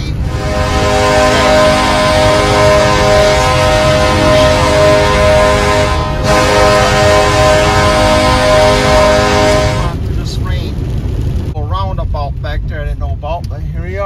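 A long, loud, steady horn-like tone of several pitches held together over a low rumble. It breaks briefly about six seconds in and stops about ten seconds in. Wavering, voice-like sounds follow over the same rumble.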